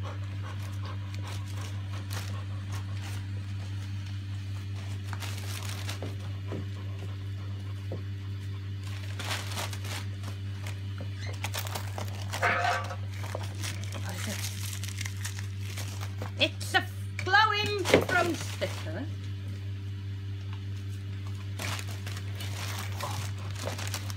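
Gift wrapping paper crinkling and tearing in scattered bursts as dogs rip open Christmas presents, over a steady low hum.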